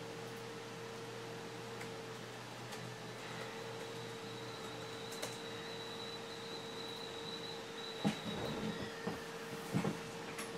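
Quiet room tone with a steady faint hum and a thin high whine, broken by a few soft clicks and rustling near the end.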